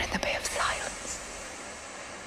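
A brief breathy whisper in the first second, then a faint steady hiss.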